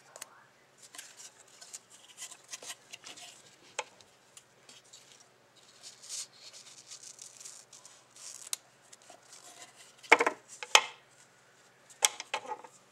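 Scissors cutting satin ribbon: light scratchy rustling as the ribbon is handled and cut, then two loud snips near the end.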